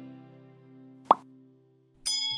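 Intro music fading out in sustained notes, with a single sharp pop about a second in: the click sound effect of a subscribe-button animation.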